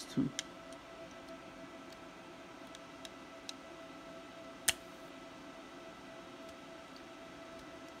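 Faint small clicks of board and header pins being handled as a Raspberry Pi PoE HAT is pressed onto the Pi's GPIO header, with one sharper click about halfway through. A faint steady tone runs underneath.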